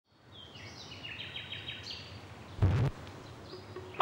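Birds chirping and whistling over faint outdoor background noise, with one loud deep thud about two and a half seconds in.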